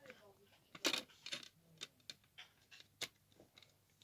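Light plastic clicks and taps from handling a CD jewel case and disc: about half a dozen short, irregularly spaced ticks, the sharpest about a second in and about three seconds in.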